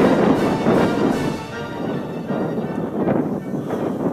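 Music playing over a steady rushing noise.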